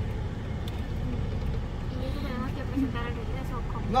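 Steady low rumble of a car's engine and tyres, heard from inside the cabin while driving, with faint voices about halfway through.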